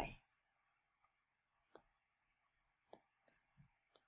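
Near silence with about five faint, brief clicks in the second half: a stylus tapping and tracing on a tablet screen while a triangle is drawn.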